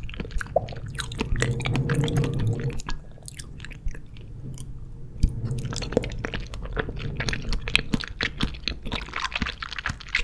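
Close-miked wet chewing of soft jelly candy, with a dense stream of small sticky clicks from the mouth.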